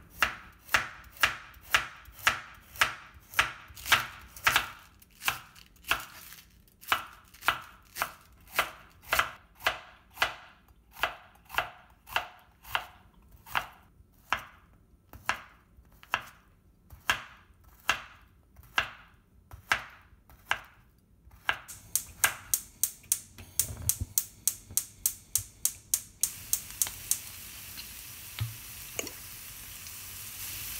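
Chef's knife slicing kabana sausage on a wooden cutting board: evenly spaced strikes of the blade on the board, about two a second, quickening late on. Near the end a steady hiss sets in.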